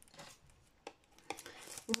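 Cosmetics packaging being handled and opened: a few faint clicks and rustles.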